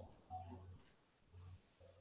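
Near silence in a pause between spoken sentences, with a faint low hum that comes and goes.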